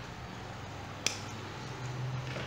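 A single sharp snip about a second in as small thread snips cut through the stem of a spray of gold decorative balls.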